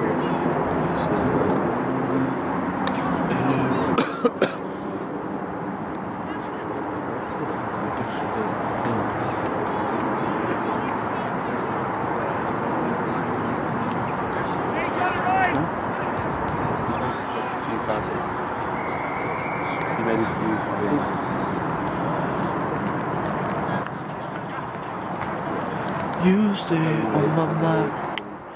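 Indistinct talking of spectators and players at a rugby match during a stoppage in play, a steady murmur of voices with no clear words. Two sharp knocks about four seconds in.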